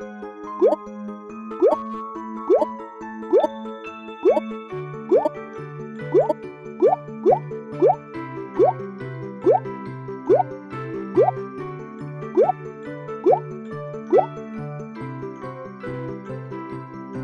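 Cheerful children's cartoon music with a bouncing bass line, overlaid with a short rising 'bloop' sound effect repeated about once a second, one for each whipped-cream dollop or cherry that pops onto the cake. The bloops stop shortly before the end while the music continues.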